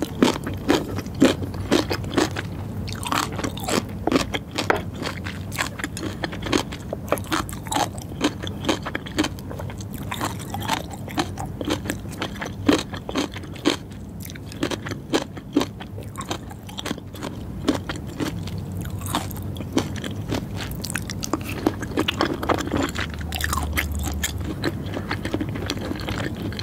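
Close-miked chewing of crunchy pickled red radish (fukujinzuke): wet crunches and mouth clicks, quick and dense at first, thinning out over the second half.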